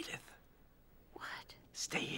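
A person whispering a few short, breathy words, in three brief bursts.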